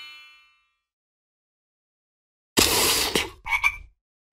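Cartoon frog croak sound effect: one rasping croak about two and a half seconds in, then two short croaks. Before it, the tail of a ringing sound fades out, followed by about two seconds of silence.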